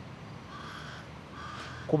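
Two faint bird calls in the background, each about half a second long, with quiet outdoor ambience between them.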